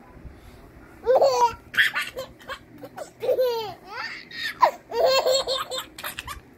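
Toddler laughing in a string of short, high-pitched bursts, starting about a second in.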